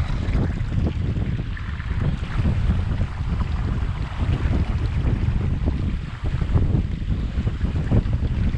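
Wind buffeting the microphone in uneven gusts over the rush of sea and wake churning past the stern of a sailboat running downwind.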